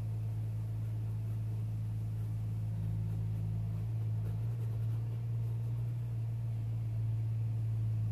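A steady low hum with a few fainter overtones, one of which drops away about halfway through; nothing else stands out.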